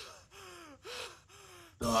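Faint, heavy panting from a male anime character out of breath from exhaustion: about four short gasps in a row, each voiced and falling in pitch.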